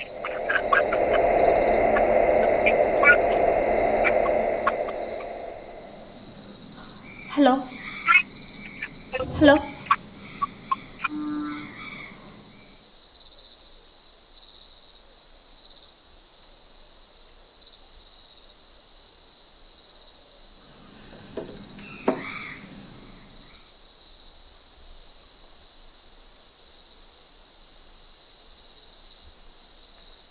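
Steady chorus of crickets throughout. A loud rushing noise fills roughly the first five seconds, then fades.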